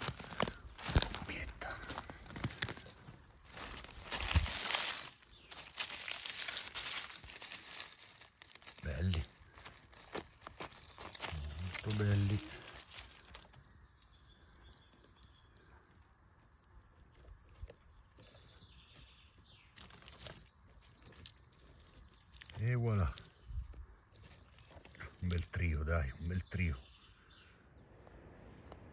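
Dry forest-floor leaf litter and twigs crackling and crunching as they are disturbed, dense for about the first half and then dying away. A man's voice makes several short utterances in the quieter second half.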